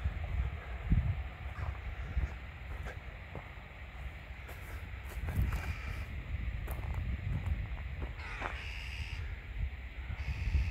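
Crows cawing a few times in the second half, over a low wind rumble and knocks on the microphone from walking.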